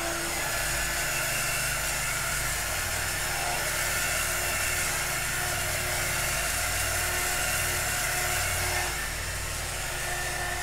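Handheld heat gun running steadily, its fan blowing with a steady hum and a faint whine, held over wet acrylic pour paint to bring up cells. It drops a little in level near the end.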